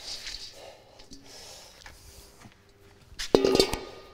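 Dry soybean hulls poured from a stainless-steel bowl onto a heap of damp sawdust, a soft rushing pour in the first second. About three seconds in, a short sharp metallic clatter with a brief ringing.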